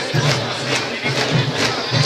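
Candombe drums of a comparsa beating a steady rhythm, sharp stick strikes over a pulsing low drum tone, mixed with loud crowd noise.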